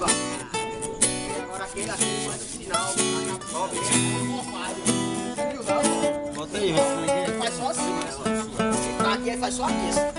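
Music led by an acoustic guitar, with a voice, playing steadily.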